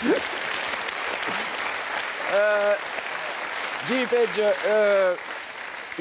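Studio audience applauding, with a voice heard briefly over the clapping twice midway; the applause thins near the end.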